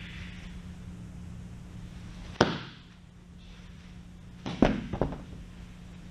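Baseballs hitting a catcher's gear in sharp knocks during a catching drill: one knock about two and a half seconds in, then a quick cluster of three or four near five seconds.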